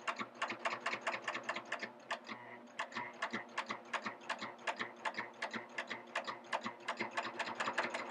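Serger stitching slowly in coverstitch mode, its needles and loopers making an even ticking of about six stitches a second over a faint steady motor hum.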